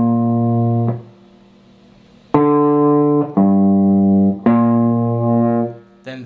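Gibson Les Paul electric guitar playing single low notes of a G blues-scale riff, slowly, one at a time. One note rings and stops about a second in, then after a pause three notes follow back to back, each held about a second.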